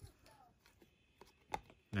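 Faint handling of a stack of Donruss Optic football cards as they are flipped through: soft slides and small clicks of card edges, with one sharper click about a second and a half in.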